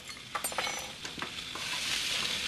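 Chopped food sizzling in a cast-iron skillet while a spatula stirs and scrapes through it, with a few sharp clicks of the spatula against the pan in the first second. The sizzle grows louder near the end.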